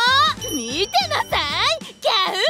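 Speech: a woman's voice speaking cheerful lines over light background music, with a short high chime about half a second in.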